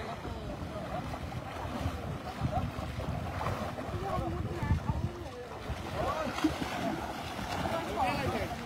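Shallow, muddy water sloshing and splashing around elephants as they wade and bathe, in uneven surges.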